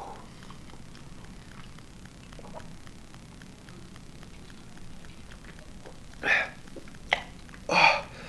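A man gulping cold carbonated cola straight from a can, with faint swallows repeating every fraction of a second. Near the end he makes a few short vocal sounds as he comes up for breath, the last one the loudest.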